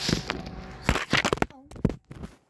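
Handling noise on the phone's microphone: a run of knocks and rubs as the phone is moved and covered, loudest about a second in, with a brief voice sound just before the end.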